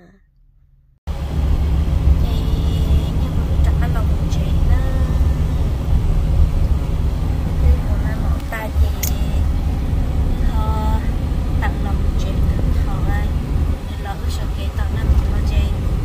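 A car driving on the road, heard from inside the cabin: a loud, steady low rumble of road and engine noise that starts abruptly about a second in.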